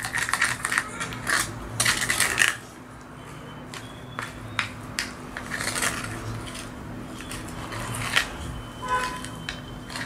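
Metal palette knife stirring and scraping thick shimmer paste in a small jar, with scrapes and light clinks against the jar as the paste is mixed until creamy. The scraping is strongest in the first couple of seconds, then turns to quieter, scattered clicks, over a faint steady hum.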